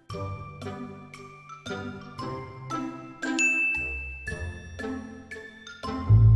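Soft tinkling music of single chiming notes, about two a second, each fading away, with low bass notes joining in the second half. About three seconds in a long high ding rings for about a second.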